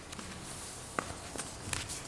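Quiet meeting-room tone with a few faint, short knocks or clicks, the first about a second in.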